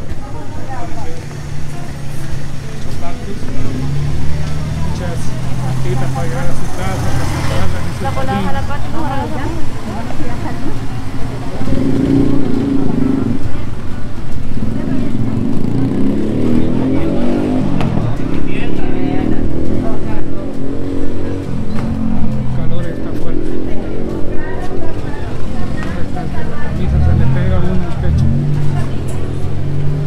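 Busy market-street sound: people talking nearby and vehicle engines running and passing, with no pause.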